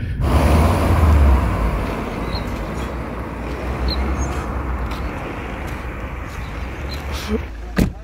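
Two cars, a Skoda Fabia hatchback and a sedan, driving past close by, loudest about a second in and fading as they move off down the road.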